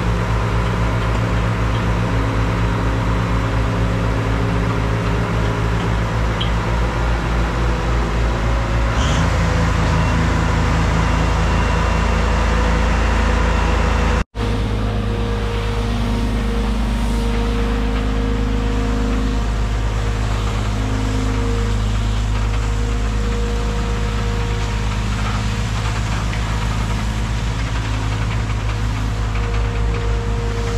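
Engine of a hydraulic boat-transport trailer running steadily under the load of a sailboat, its revs picking up about nine seconds in. A brief break near the middle.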